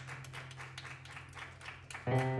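A quiet lull in a live band set: scattered light claps or taps over a steady low hum, with the music dropped out. The band comes back in loudly right at the end.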